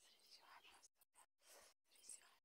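Near silence: only faint, brief noises broken by short gaps.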